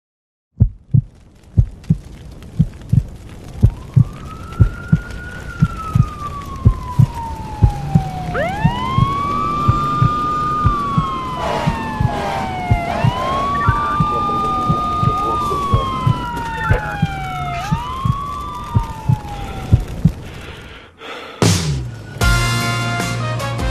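Heartbeat sound effect beating steadily, about one and a half beats a second. From about three seconds in it is overlaid by several overlapping siren wails, each rising quickly and then falling slowly.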